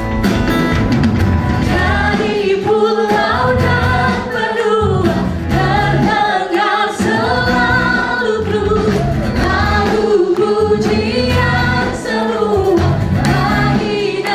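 Live Christian worship music: a group of singers singing a praise song together into microphones, with instrumental accompaniment.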